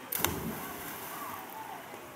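A person plunging into a river: one sharp splash a moment in, with the churned water settling over about half a second.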